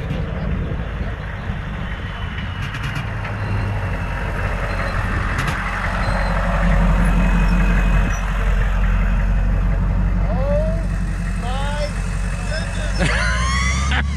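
A Hummer H1 driving slowly past at close range, growing louder as it comes alongside about halfway through and fading as it pulls away.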